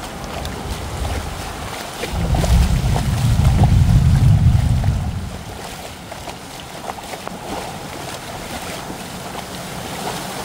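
Heavy rain falling on a flooded street, a steady hiss of rain and water with scattered drop ticks. From about two to five seconds a loud low rumble of wind buffets the microphone, then fades.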